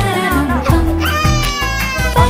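An infant crying over a background song with a steady beat; the crying is strongest in the second half.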